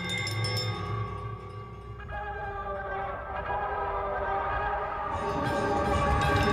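Electroacoustic music for piano and tape: sustained, bell-like electronic tape tones over low bass tones. The texture shifts about two seconds in and grows denser and brighter near the end.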